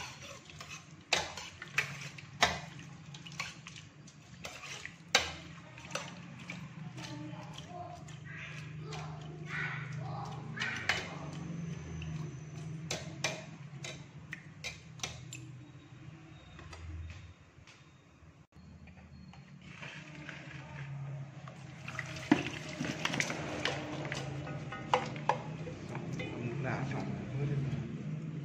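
Utensils clinking and scraping against a stainless steel pot as boiled chicken feet are stirred and scooped, in frequent sharp clicks. A quieter spell comes about two-thirds through, then more clinks near the end. A steady low hum runs underneath.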